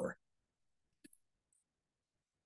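Near silence with one faint click about a second in, from a computer keyboard or mouse as the code file is saved.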